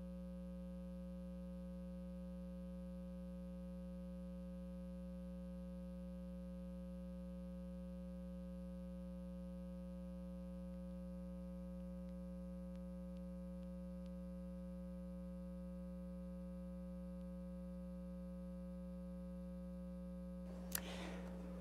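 Faint, steady electrical hum made of several unchanging tones, with nothing else heard.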